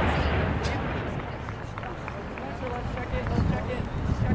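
Distant voices of players and spectators calling across an outdoor soccer field, over a low rumble that fades during the first two seconds.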